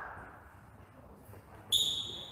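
A single high, clear ringing ping that starts suddenly near the end and fades over about a second, heard against the quiet of a large hall.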